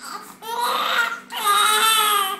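A baby crying: a long wavering cry about half a second in, then a second one after a short break, over a faint steady hum.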